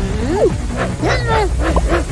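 Cartoon character voice effects, short whiny vocal noises sliding up and down in pitch, over a background music track.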